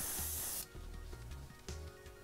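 Airbrush spraying paint onto a model train bogie, a steady hiss that stops about half a second in.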